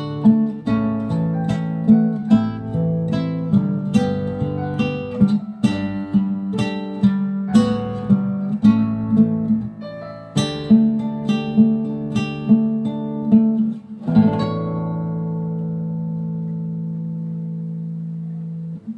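Nylon-string classical guitar playing a fingerpicked accompaniment of plucked notes over held bass notes. About fourteen seconds in it closes on a final chord that rings out for several seconds.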